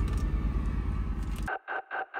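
Steady low rumble of a diesel engine running, heard inside a semi truck's sleeper cab. About one and a half seconds in it cuts off abruptly and electronic music begins with pulsing tones, about four a second.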